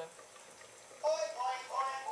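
Faint, low-level quiet for about a second, then a voice speaking.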